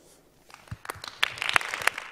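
Audience applause starting about half a second in, a few scattered claps at first that quickly thicken into steady clapping.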